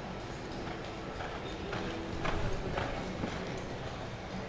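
A horse's hoofbeats on arena dirt, landing about twice a second and loudest a little past halfway as it passes close.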